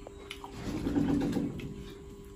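A brief low closed-mouth "mmm" hum from a man eating, lasting about a second from about half a second in, over a faint steady background tone and a few small clicks.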